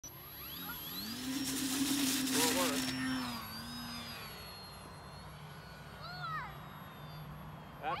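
Brushless electric motor and propeller of a small foam RC plane spooling up about a second in for takeoff. It holds a steady whine for a couple of seconds, then is throttled back and fades as the plane flies off.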